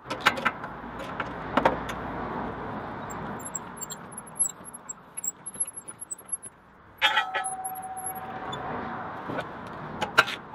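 Hand-cranked bench ring roller bending a steel bar into a ring: metal clicks and clanks from the bar and rollers over a steady rolling noise. About seven seconds in there is a sharp clank, then a held tone lasting about two seconds.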